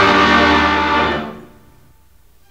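A loud, held orchestral chord from the drama's music score, a dramatic sting for the ghost's arrival, fading away after about a second and a half.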